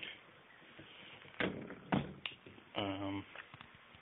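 Handling knocks and clicks: two sharp knocks about a second and a half and two seconds in, the second the louder, then a lighter click just after, with a short vocal sound from the man near the end.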